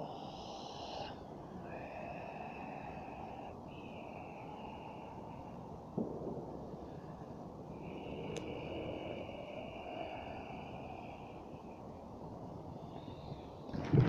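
A woman breathing out slowly and forcefully through pursed lips, four long hissing exhales in a row; the last and longest runs about three and a half seconds. A short knock comes about six seconds in.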